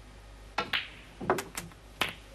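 Snooker balls clicking: the cue tip striking the cue ball and balls colliding on the table, a quick series of sharp clicks starting about half a second in.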